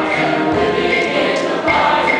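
Mixed choir singing in harmony, with evenly spaced accents keeping a steady beat.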